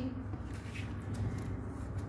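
Quiet room tone: a steady low background hum with no distinct sound events.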